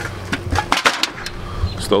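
A plastic bag of empty aluminum drink cans rattling and clinking as it is swung and set down, with a quick run of clatters in the first second.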